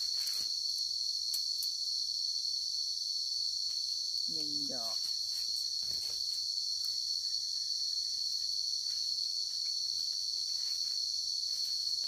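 A steady, high-pitched chorus of forest insects droning without a break. Faint rustles of footsteps in dry leaf litter come now and then.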